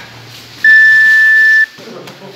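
A round timer's beep marks the end of the sparring round: one loud, steady high tone lasting about a second, starting just over half a second in.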